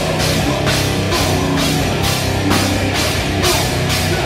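Death metal played live: heavy distorted electric guitars over a drum kit, with a cymbal crash on the beat about twice a second.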